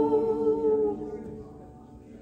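Women's voices in a live worship band holding a sung note with little accompaniment, fading out about a second in and leaving a quiet pause.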